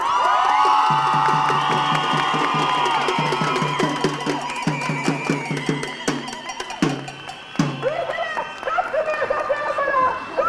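Marchers' hand-held drums beating a steady rhythm, with a few sharper, louder strikes about seven seconds in. Over it a crowd of women's voices holds a long, high collective cry that fades about halfway through.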